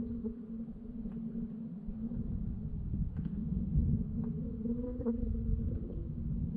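Muffled underwater rumble picked up by a GoPro in its housing below the surface, with a steady low hum and a few faint clicks.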